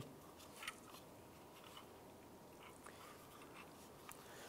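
Near silence, with a few faint clicks and light rattles from a tailgate handle and lock cylinder being handled.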